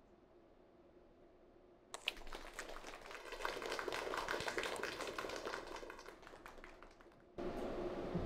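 Near silence for about two seconds, then a crowd of guests starts applauding, a dense clapping that swells and then slowly fades before cutting off shortly before the end.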